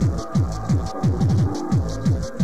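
Hardcore tekno DJ mix: a heavy kick drum with a falling pitch hits about three times a second, with a quick roll of kicks about halfway through, over ticking hi-hats and a held synth line.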